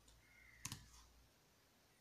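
Near silence: room tone, with a single faint click about two-thirds of a second in.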